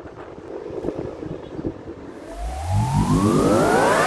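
Wind noise on the microphone while riding a bicycle. About halfway through, a rising electronic synth sweep starts and grows louder, building into a dubstep intro jingle.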